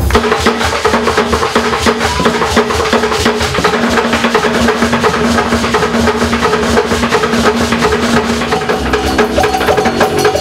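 Ensemble music driven by busy percussion: a fast, dense clicking rhythm over a repeating pattern of low pitched notes, with a higher sustained note line coming in near the end.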